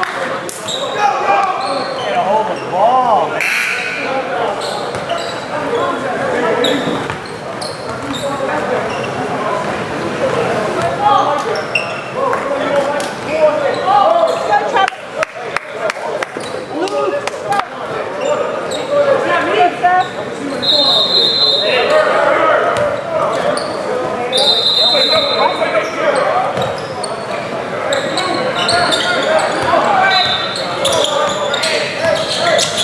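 Echoing gym hubbub of many voices: players and spectators talking in a large hall, with a basketball bouncing on the hardwood floor. Two brief high-pitched tones sound about two-thirds of the way through.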